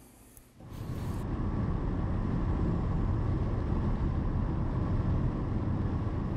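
Steady low road and engine rumble heard from inside a moving car, starting about half a second in after a brief hush.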